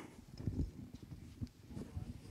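Faint, irregular low knocks and shuffling as an audience gets up from its seats and starts to leave.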